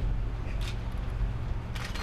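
Steady low rumble with two short, sharp clicks about a second apart.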